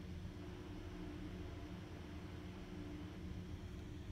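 Quiet room tone: a steady low hum with faint hiss.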